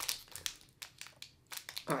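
Trading cards and their crinkly plastic-foil packaging being handled: a run of light crinkles, rustles and ticks that thins out about a second and a half in.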